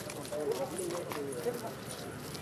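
Indistinct talk of people in the background, voices overlapping, with a few short clicks and knocks among them.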